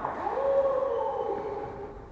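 A person's long drawn-out call: the voice swoops up at the start, holds, then sinks slowly and fades out about a second and a half in, echoing in a large hall.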